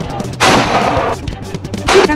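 K9 Thunder 155 mm self-propelled howitzer firing: two loud blasts, the first about half a second in and the second near the end.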